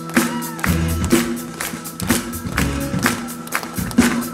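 Live worship-band music from an outdoor stage with a steady beat of about two strokes a second over sustained bass notes.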